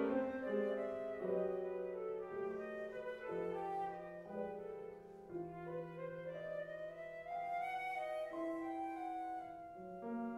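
Flute and grand piano playing a free improvisation together: the flute holds long notes that change pitch every second or so over sustained piano chords.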